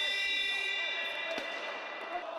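Basketball scoreboard buzzer sounding one long, steady, high electronic tone at the end of the second quarter, over hall ambience.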